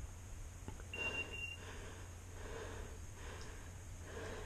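A single electronic beep, a steady high tone of about half a second about a second in, typical of a pointing dog's beeper collar. Under it is a person's heavy, rhythmic breathing.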